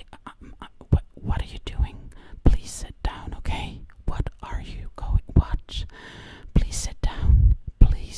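Close, indistinct whispering into the microphone, broken up by sharp clicks and a few low thumps, the heaviest near the end.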